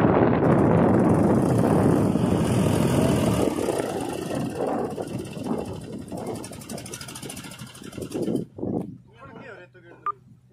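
Mahindra 265 DI tractor's three-cylinder diesel engine running hard under the load of a fully laden trolley stuck in a soft sand rut; the sound drops away after about three seconds. Men's voices are heard near the end.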